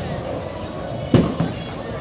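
Bowling ball released and hitting the lane with a sharp thud about a second in, followed by a smaller knock, over bowling-alley background music and chatter.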